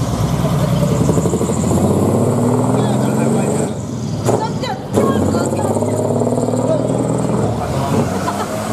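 Diesel engine of a decorated Japanese dekotora truck with a mani-wari (split exhaust manifold) exhaust, running loud and low as the truck drives away, with a brief dip about four seconds in.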